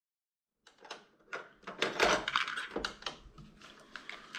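Irregular plastic clicks and clatter from a cassette being handled at a Sony mini stereo system, starting about half a second in.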